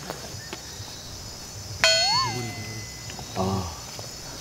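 A bell-like 'ding' sound effect about two seconds in: a sharp strike whose pitch bends up and back down, with one high tone ringing on for over a second.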